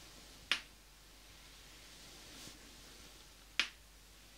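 Two sharp finger snaps about three seconds apart, picked up by a close binaural microphone, with a soft swish of hands moving between them.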